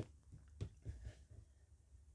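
Quiet room tone with a few faint taps and knocks, about half a second and about a second in, as two smartphones are handled and set down on a table.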